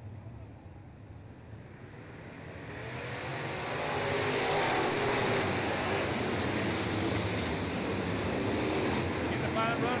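A field of Sportsman dirt late model race cars accelerating together at the green flag. Their engine noise swells from about two seconds in, rising in pitch, then runs loud and steady as the pack goes by.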